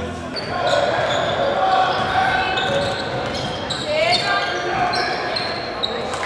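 Basketball game sound in a gym: sneakers squeaking on the hardwood court in short high squeaks, a ball bouncing, and players' voices echoing in the hall.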